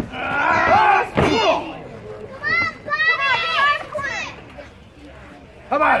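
Children in the crowd yelling and shrieking in high, rising and falling cries in two loud bouts, with a thud about a second in; near the end they shout "yeah!"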